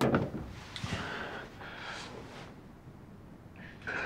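A drinking glass set down on a toilet tank with a knock, then a man's harsh breaths out through the mouth, twice, after a gulp of straight vodka, with another breath near the end.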